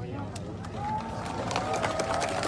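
People talking in an outdoor crowd, with several voices overlapping more from about halfway through, and a few sharp clicks.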